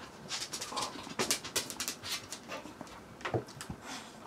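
A restless pet dog moving about a small room, heard as faint, irregular clicks and taps.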